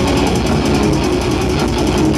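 Death metal band playing live at full volume: heavily distorted guitars and bass over fast, rapid-fire drumming, a dense, unbroken wall of sound.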